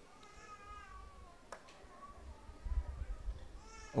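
Faint, high-pitched, wavering cries: one drawn-out call lasting over a second, then two shorter ones, with a brief low rumble and a single click in between.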